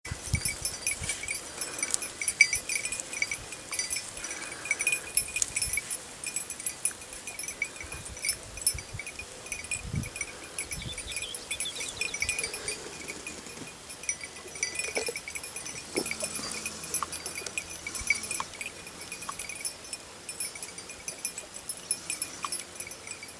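Small bells on hare hounds' collars jingling irregularly and continuously as the dogs move through the grass tracking scent, with a few low thumps.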